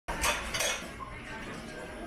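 Dishes clinking, two sharp strikes within the first second, followed by a low, steady alley background.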